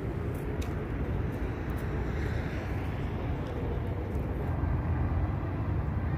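Outdoor city ambience: a steady low rumble of distant traffic.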